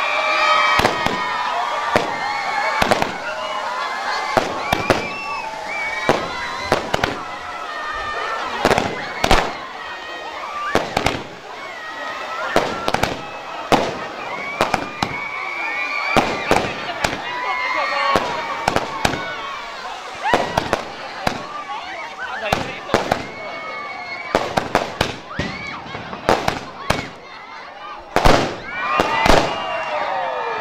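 Fireworks going off in a rapid, irregular series of bangs and crackles, with many shells bursting in the sky.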